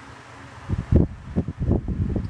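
A run of loud, irregular low rumbling bumps on the microphone starts under a second in, like close handling noise or breath puffing on the mic.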